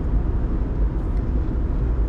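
Steady low road and engine rumble heard from inside a moving car's cabin.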